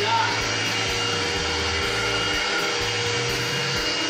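Upright vacuum cleaner running steadily on carpet, its motor giving a steady whine over the rush of air.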